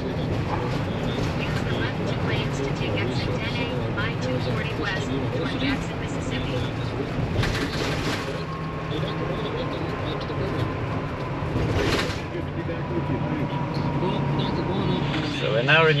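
Steady road and engine noise inside a car driving at highway speed, with a couple of brief louder swishes and faint, indistinct voices underneath.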